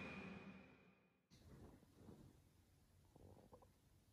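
Near silence: background music dies away in the first moment, followed by a few faint, brief low noises.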